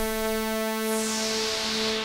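Bitwig Polysynth holding a steady synthesizer tone, sequenced by the ParSeq-8 modulator with its Smooth parameter turned up. The step changes glide in slowly rather than switching hard, heard as a hissy upper layer that gradually swells and fades.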